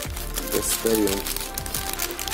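Plastic blind-bag wrapper crinkling and crackling as it is worked open by hand, over background music.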